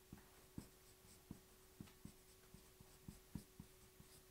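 Faint taps and short strokes of a marker pen writing on a whiteboard, about ten small irregular clicks as characters are written.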